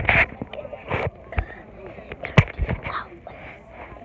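Handling noise from a phone held close to the face: a few knocks and rubs, the loudest about two and a half seconds in, over faint children's voices.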